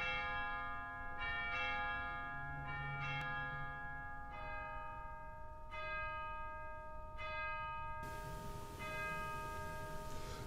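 Bells struck one at a time, about every second and a half, each ringing on and overlapping the next.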